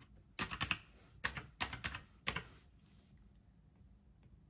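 Keys of a retro typewriter-style desktop calculator pressed in a quick run of about ten sharp clicks, grouped in short bursts, stopping a little after two seconds in.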